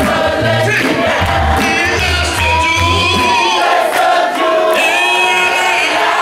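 Live gospel singing: male voices with instrumental accompaniment, the low bass line dropping out about three seconds in.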